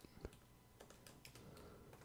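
A few faint computer keyboard keystrokes, the clearest one just after the start, over near silence.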